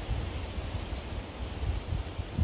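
Strong wind blowing across the microphone outdoors: an uneven low rumble that rises and falls with the gusts, under a steady hiss.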